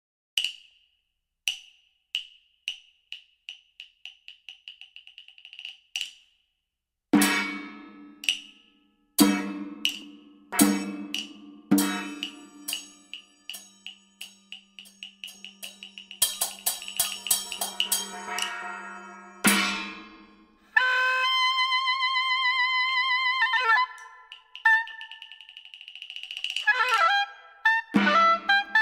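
Percussion in Peking opera style: sharp wooden clicks in a run that speeds up, then louder ringing strikes and quick dense beats. About three-quarters of the way through, a modern European oboe comes in with a long wavering note, then shorter phrases.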